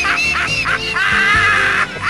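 A person laughing in a rapid run of high-pitched whoops, ending in one longer held whoop, over music.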